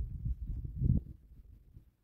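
Wind buffeting a handheld camera's microphone: an uneven low rumble that swells briefly about a second in, then dies down near the end.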